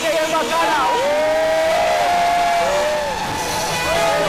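Music: a voice sings long, sliding notes, one held for over a second, over a backing track.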